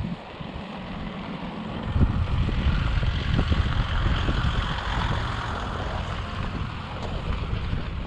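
A Nissan Patrol SUV driving slowly past on a gravel road, its engine and tyres on the gravel rising in level from about two seconds in, loudest around the fourth second, then fading as it moves away. Wind buffets the microphone throughout.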